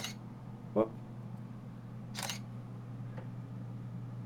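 A Canon DSLR's shutter firing once, about two seconds in, released by a homemade intervalometer. It is the sign that the intervalometer is working.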